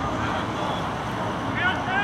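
Rugby players shouting on the pitch around a ruck, the calls coming near the end, over a steady low background rumble.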